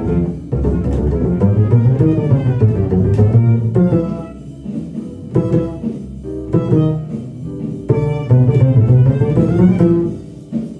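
Upright double bass played pizzicato: a fast, continuous run of plucked notes in a jazz line, a bass transcription of a trumpet solo.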